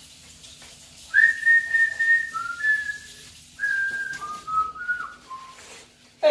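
A person whistling a tune in clear held notes: two short phrases, each stepping down in pitch, starting about a second in.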